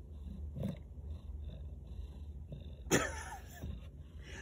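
A domestic cat makes a short vocal sound about three seconds in, falling in pitch, after a fainter one about half a second in.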